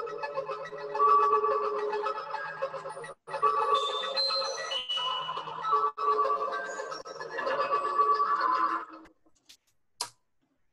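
Two modular synthesizers playing a live electronic jam: a rapid pulsing sequence of bleeping notes that step up and down in pitch, heard thin through a video call. The sound cuts out completely twice for an instant, and the music stops about nine seconds in.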